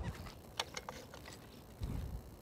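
Motorcycle keys on a lanyard being handled at the ignition of the parked, switched-off bike, clicking and jingling lightly several times in the first second.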